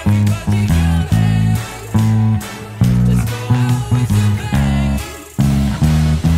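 Four-string electric bass guitar playing a punchy stop-start line of short low notes with brief gaps between them, over a recorded band backing track.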